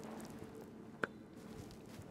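Faint rustling of clothing and seat as a person squeezes into a low sports-car seat, with one short sharp click about a second in.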